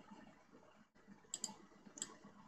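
Computer mouse clicks over faint room noise: a quick pair of clicks about one and a half seconds in and another single click near the end.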